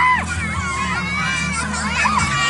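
Children shouting and shrieking as they play in a foam pool, over general crowd noise, with a steady low hum underneath.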